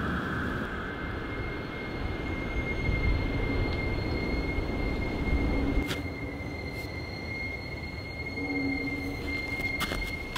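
Eerie horror-film sound design: a steady high-pitched whine over a low rumble, setting in about a second in, with a few sharp clicks around six seconds and near the end.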